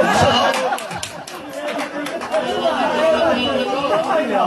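Chatter: several voices talking over one another, with a laugh at the start.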